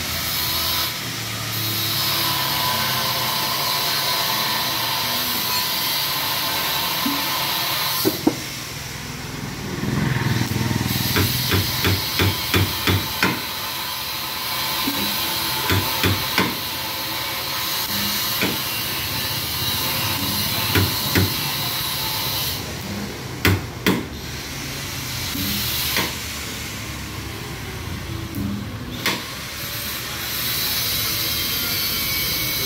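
Slide-hammer dent puller knocking as it pulls a dent out of an auto-rickshaw's rear body panel: sharp knocks, a quick run of about eight in the middle and single or paired ones later, over a steady hiss.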